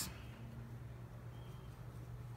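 Quiet room tone: a faint steady low hum with no distinct sound over it.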